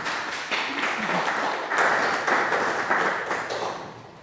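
Audience applauding, swelling about two seconds in and dying away near the end.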